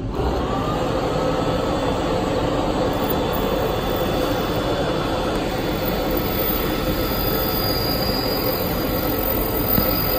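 Minute Key kiosk's key-cutting machine running as it cuts a copy key: a loud, steady whir that starts abruptly, with a brief rising whine as it spins up, then holds level throughout.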